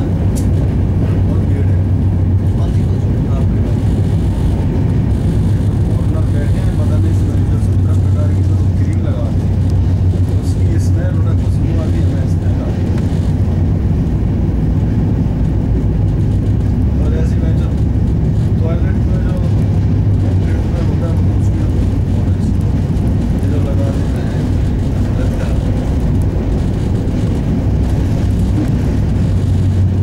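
Steady running rumble of an express train's passenger coach heard from inside the coach, with a constant low hum under it.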